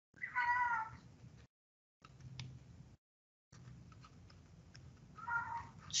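House cat meowing twice: a short meow with a falling pitch just after the start, and a fainter one about five seconds later.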